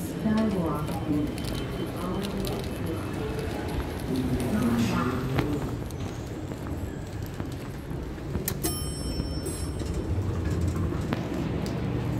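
Airport terminal ambience with distant voices and footsteps in a lobby between elevators; a short burst of high electronic beeps sounds about nine seconds in.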